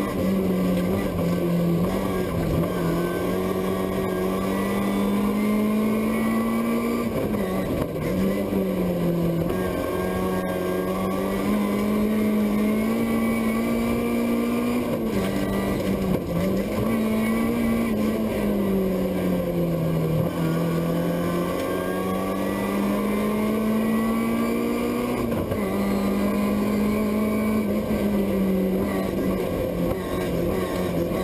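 BMW E36 rally car engine at race pace, heard from inside the stripped cabin. The engine note holds high and drops sharply several times before climbing again, as the revs fall on gear changes and lifts.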